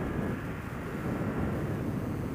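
Suzuki Gladius SFV650's 645 cc V-twin engine running steadily as the motorcycle rides along, with wind noise on the microphone.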